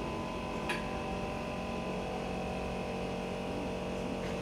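Air compressor running with a steady hum, pumping air into the Strandbeest's air-storage bottles. A single brief click sounds under a second in.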